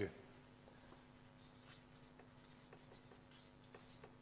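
Faint scratching strokes of a pen writing a few letters on a board, bunched about halfway through, over a low steady hum.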